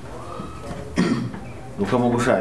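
A single short cough about a second in, during a pause in a man's speech, with his voice resuming near the end.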